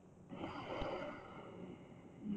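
A person's long, deep breath in a held yoga pose, a rush of air that starts about a third of a second in and fades over a second or so.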